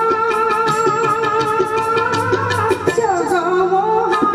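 Live Odia bhajan music: tabla strokes under a sustained, wavering melody line, with a phrase gliding down in pitch about three seconds in.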